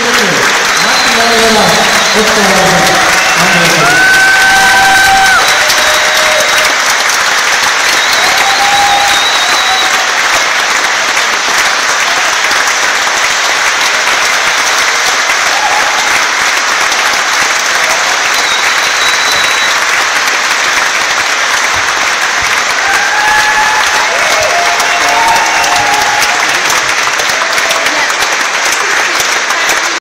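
Audience applauding steadily and at length, with voices calling out over the clapping.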